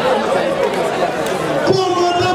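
People talking over crowd chatter. Near the end a voice starts a long, held call.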